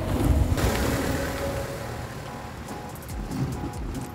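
Wind buffeting the microphone at the start, dying away, then soft background music fading in about halfway through.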